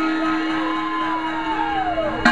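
A single low note held steady through the club PA over crowd noise, while a long whoop glides slowly downward in pitch across the second half: the hushed lead-in before a live hip hop song's beat comes in.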